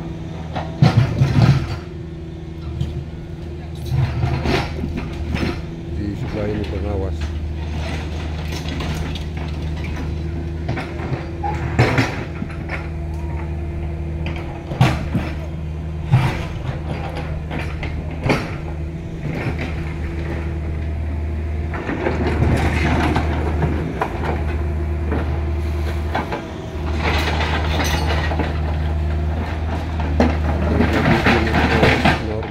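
Caterpillar excavator's diesel engine running steadily under load, with scattered sharp clanks and knocks as the bucket works among river stones and gravel.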